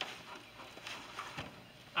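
Faint rustling of a soft fabric carrying case with a few light knocks as a Jackery Explorer 500 portable power station is set down inside it.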